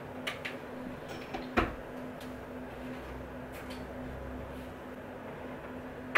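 A few light knocks and clicks from equipment being handled and cables being plugged in, the loudest about a second and a half in, over a steady faint room hum.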